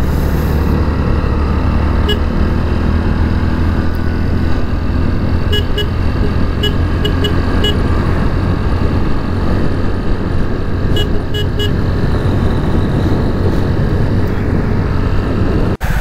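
Hero Splendor motorcycle running steadily at road speed, with a few brief high beeps around the middle.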